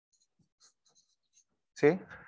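Faint light scratches and ticks of a stylus writing on a tablet. Near the end comes a short spoken "¿sí?".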